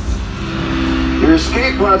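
Theme-park dark ride soundtrack: a low rumble with a held music chord as the crash-landed vehicle settles. A recorded voice over the ride's speakers starts about a second in.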